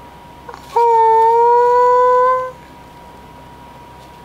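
A woman's voice holding one long high note for under two seconds, starting about a second in, its pitch creeping slightly upward.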